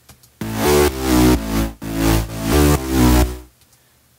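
Electronic synth bass line played back on its own: a run of pitched, gritty bass notes with heavy low end, swelling and dipping in loudness about four times under sidechain compression. It starts about half a second in and stops shortly before the end.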